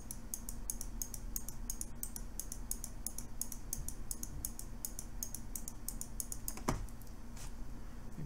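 Rapid, evenly spaced high-pitched clicking, about six clicks a second, over a steady low hum, with one brief louder sound a little before the end.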